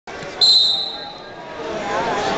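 Referee's whistle blown once to start a wrestling bout: a single steady, high-pitched blast about half a second in, lasting around a second and fading into the gym's echo.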